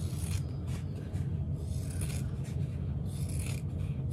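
Fabric scissors cutting through vinyl: a run of short, scratchy cutting strokes at an uneven pace, over a steady low background hum.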